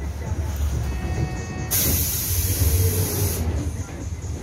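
Inside a natural-gas city bus, the engine runs with a low rumble. Almost two seconds in, a loud hiss of compressed air from the bus's air system lasts about a second and a half.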